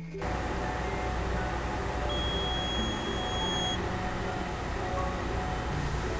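A steady rushing noise that starts abruptly and cuts off suddenly just after the end, with faint music under it.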